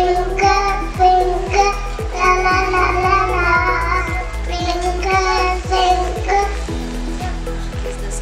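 A group of young children singing a rhyme together into a microphone, over a steady beat.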